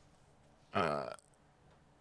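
A man burps once, briefly, the pitch falling, about three-quarters of a second in.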